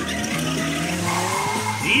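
A car's engine note rising steadily as it revs, with tyres skidding on loose gravel, heard as playback through speakers.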